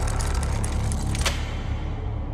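Dark horror-trailer score and sound design. A steady low rumble runs throughout, with a flurry of high ticks over it that ends in a sharper accent a little over a second in.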